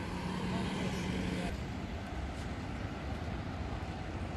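City road traffic: a car drives past over a steady wash of engine and tyre noise.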